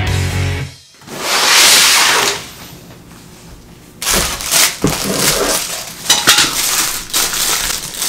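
Rock background music stops about a second in and is followed by a brief loud rush of noise. From about four seconds in, plastic packaging crinkles and rustles in irregular bursts with light clicks as it is handled and unwrapped.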